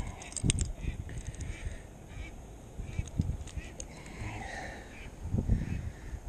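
Wind buffeting the microphone in a steady low rumble, with a few small clicks and rustles from handling a handheld fish scale clipped to a trout's jaw.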